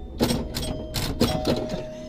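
Pinball machine in play: a quick, irregular run of sharp clicks and knocks from the flippers and bumpers, with a steady ringing tone held for over a second in the middle.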